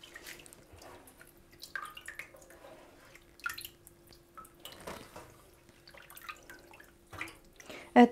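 Water dripping and splashing from wet hands and flower clusters into a sink of standing water, as snowball viburnum blossoms are squeezed and rinsed; scattered, irregular drips and small splashes.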